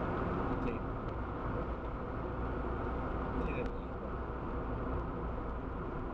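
Steady road noise inside a moving car's cabin: engine and tyre rumble, with two brief faint higher sounds about a second in and about three and a half seconds in.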